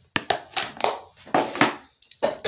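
Plastic packaging crinkling and rustling as a wipe is pulled from its plastic tub and handled, in a quick run of irregular crackly bursts.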